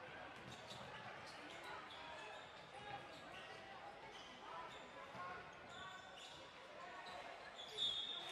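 A basketball being dribbled on a hardwood gym floor, with indistinct voices echoing around the large hall.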